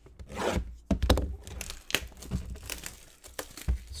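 Plastic wrapping being torn and crinkled off a cardboard trading-card box: a run of short, scratchy rips and rustles.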